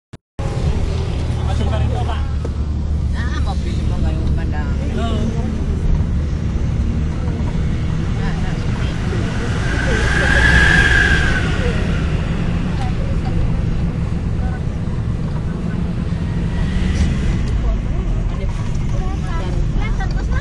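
Road and engine noise heard from inside a moving car: a steady low rumble, with a swell that rises and fades about ten seconds in as an oncoming vehicle passes.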